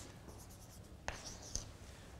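Chalk writing on a blackboard: a few faint, short scratchy strokes with a couple of sharp taps as the chalk meets the board.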